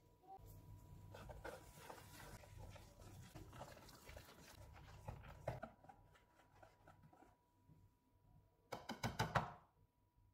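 Metal wire whisk beating gram-flour batter in a bowl: faint, irregular scraping and ticking strokes, with a short run of louder clicks near the end.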